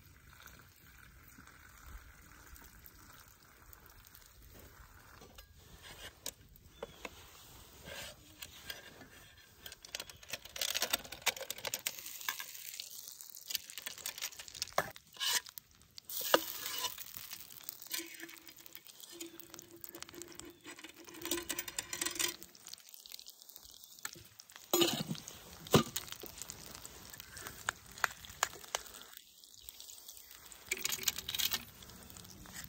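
Cooked macaroni tipped into a hot skillet of chili-seasoned ground beef over a campfire, then stirred in with a metal spoon. From about ten seconds in there is sizzling, with frequent clinks and scrapes of the spoon against the pan.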